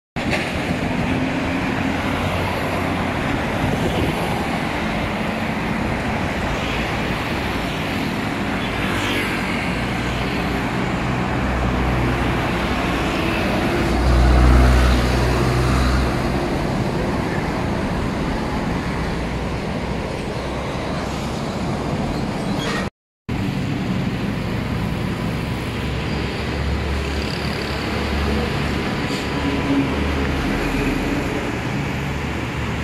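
Steady outdoor road-traffic noise with a low rumble, swelling louder for a couple of seconds about halfway through as a vehicle passes. The sound drops out briefly about two-thirds of the way through.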